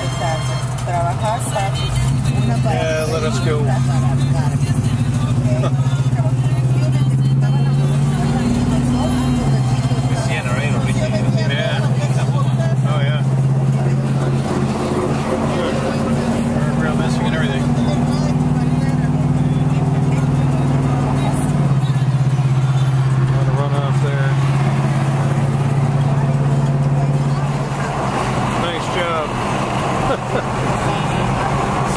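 Car engine droning steadily inside the cabin while driving, its pitch stepping down sharply about nine seconds in and again about twenty-one seconds in, as with gear changes. Faint voices are heard over it.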